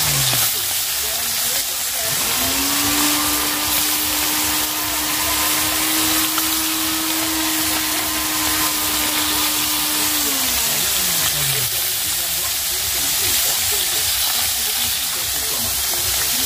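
Singi (stinging catfish) frying in hot oil in an iron kadai, giving a steady sizzle. About two seconds in, a steady pitched hum starts up and then winds down in pitch near eleven seconds.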